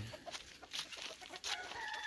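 Chickens clucking faintly, with a short held call near the end.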